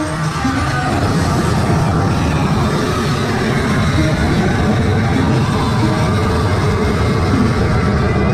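Loud amplified music with a heavy bass-driven beat, playing steadily throughout.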